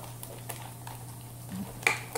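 Faint scrapes and clicks of a utensil stirring slime in a bowl over a steady low hum, with one sharp click near the end.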